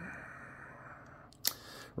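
A breathy exhale of effort fading away, then a single sharp click about one and a half seconds in.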